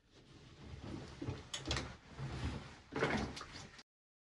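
Laundry being pulled out of the drum of a Hoover Dynamic Next top-loading washing machine: rustling and handling noise with a couple of sharp clicks and knocks from the drum, about a second and a half in and again about three seconds in. The sound cuts off suddenly near the end.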